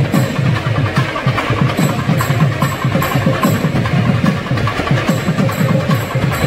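Kerala temple percussion ensemble playing: fast, dense drumming with bright cymbal clashes recurring over it.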